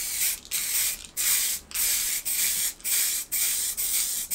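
Aerosol can of khaki matte spray paint hissing in short bursts, about eight in four seconds, each roughly half a second long with brief gaps between, as paint is sprayed onto a rifle.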